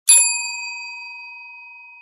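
Notification-bell 'ding' sound effect for a subscribe-button animation: one bright bell strike just after the start, ringing on and fading slowly.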